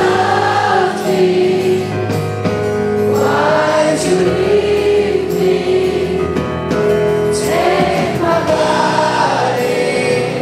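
Live pop-rock band performance with acoustic guitar and keyboards and several voices singing together in sustained, wavering notes, recorded from the audience.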